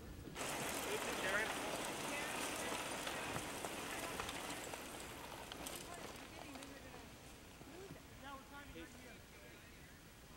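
A pack of mountain bikes riding past on a dirt trail, tyres crunching over dirt and gravel, the noise fading as the riders move away, with scattered voices.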